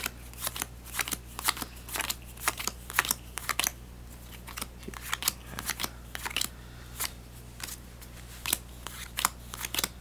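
Yu-Gi-Oh trading cards being handled and sorted by hand: quick, irregular clicks and flicks of card stock, several a second, thinning out for a couple of seconds in the middle.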